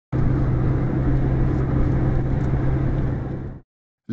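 Steady road and engine noise of a moving car heard from inside its cabin, with a low hum under it. It cuts off suddenly about three and a half seconds in.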